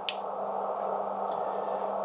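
Static from the speaker of a HamGeek DSP-01 software defined radio tuned to an empty stretch of the 14 MHz shortwave band: a steady, muffled hiss over a low hum, with a small click near the start.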